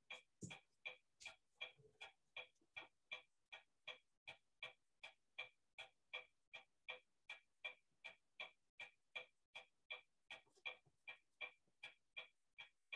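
Faint clock ticking steadily, about three ticks a second.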